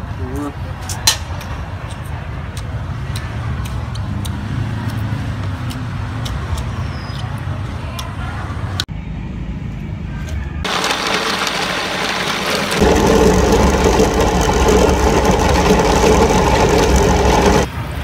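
A meat grinder's motor starts a little past halfway and runs steadily and loudly, growing louder and more tonal a couple of seconds later, as it grinds raw chicken. It cuts off suddenly near the end. Before it there is a low steady rumble with a few light clicks.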